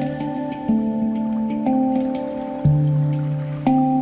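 Handpan played in slow strokes, about one ringing note a second, each note sustaining under the next. A held vocal note ends about half a second in.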